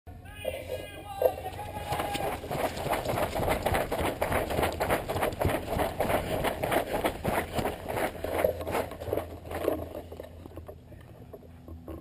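Running footsteps on grass, about three a second, with the marker and gear jolting against the barrel-mounted camera, fading out about ten seconds in as the runner slows.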